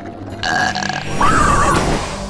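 Cartoon belching sound effect: two long belches, the second wavering in pitch.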